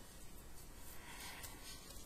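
Faint stirring of a thick flour batter with a utensil in a stainless steel mixing bowl, soft and irregular.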